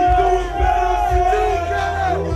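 A man's long, held shout into the microphone, one sustained call lasting nearly two seconds and ending just before the close, over the heavy bass of a hip hop beat with crowd noise.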